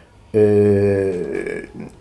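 A man's voice holding a long hesitation filler, a drawn-out "eee" on one low, steady pitch for about a second, after a short pause at the start.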